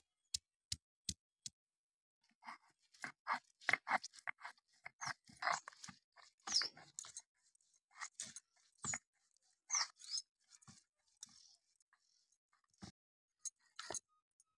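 Stone roller knocking on a stone grinding slab (sil-batta), a regular two to three knocks a second that stops after about a second and a half. Then irregular crunching and scraping with short high squeaks as dry red chillies, garlic and spices are crushed and ground on the stone, ending in a few scattered knocks.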